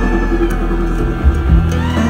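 Live bluegrass band playing an instrumental passage, amplified through a theatre PA: upright bass holding low notes under acoustic guitar, mandolin and dobro, with a sliding note near the end.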